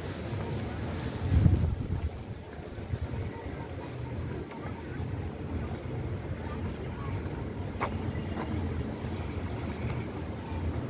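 Wind buffeting the microphone outdoors: a steady low rumble that surges unevenly, with the strongest gust about a second and a half in.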